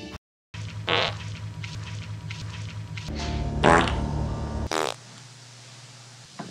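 A long, low, buzzing fart sound effect lasting about four seconds, with louder, squeakier blasts about a second in and again near the end, before it cuts off.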